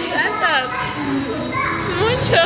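High-pitched, child-like voices chattering and calling out.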